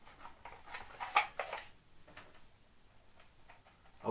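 A few light clicks and knocks from the Aqua Pro 600 canister filter's plastic media trays as they are handled, the loudest about a second in.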